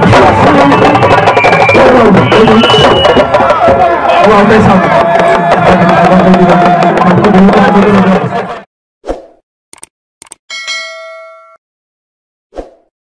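Loud live drumming with voices and crowd noise for about eight and a half seconds, cutting off suddenly. Then a few clicks and a ringing ding: the sound effect of a subscribe-button and notification-bell animation.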